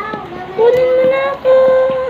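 A high voice singing or calling in long, drawn-out notes: two sustained notes, each held steady at one pitch for most of a second.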